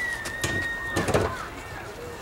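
A single long whistled note, held for about two seconds and sliding slightly down in pitch before it stops, over people's voices.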